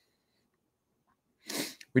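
Near silence for about a second and a half, then a short, sharp breath noise from a man at a microphone, a third of a second long, just before he speaks again.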